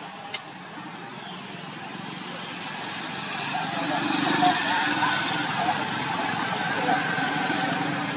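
Baby macaque crying in wavering, whimpering calls, over an engine-like noise that grows louder from about three seconds in and stays up.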